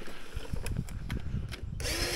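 Gardena 380AC battery cylinder mower: a few light clicks, then near the end its electric motor and cutting reel start suddenly and run with a steady hum, the mower starting this time on the button press.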